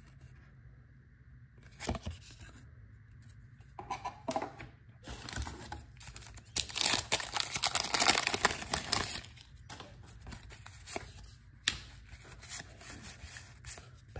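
Wax-paper wrapper of a 1987 Donruss baseball card pack being torn open and crinkled by hand. The crackling starts about four seconds in and is loudest in the middle, then trails off into a few light clicks.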